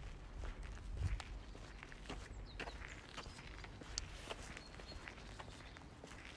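Footsteps of a person walking at a steady pace on a paving-stone sidewalk, about two steps a second, faint over a quiet background hiss.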